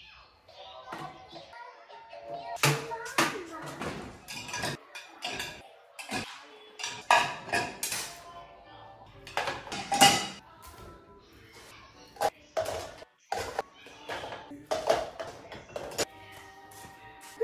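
Dishes and cups clattering in dishwasher racks as they are handled, a run of irregular clinks and knocks.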